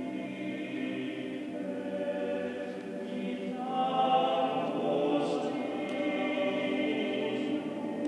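Male vocal ensemble singing unaccompanied sacred choral music in the middle and low register, in held chords of several voices. The sound grows louder about four seconds in as higher notes come in.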